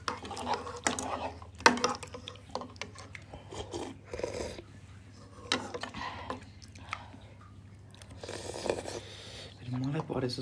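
Close-up eating sounds: metal spoons clicking and scraping in bowls, with chewing and a couple of longer slurps of hot pot soup at irregular moments.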